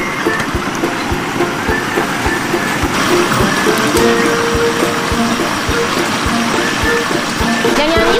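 Food sizzling and bubbling in a pot of hot deep-frying oil, a steady crackling hiss, under background music with a steady beat of about two thumps a second.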